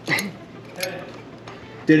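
Faint voices with a few sharp clicks, one near the start and one just under a second in, then a man starts speaking near the end.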